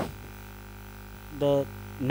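Steady low electrical hum, mains hum in the recording, in a pause of a man's lecture; he says one short word about one and a half seconds in.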